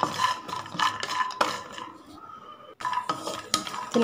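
Wooden spatula stirring almonds and cashews in ghee in a nonstick pan: nuts clicking against the pan and scraping. The stirring goes quieter past the middle, then the clicks return suddenly about three seconds in.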